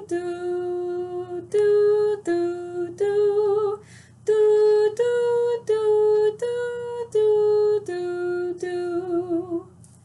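A woman singing a simple three-note melody on mi, sol and la to 'doo', one short held note at a time, with a brief break about four seconds in; the last note of each phrase is held with a wavering vibrato.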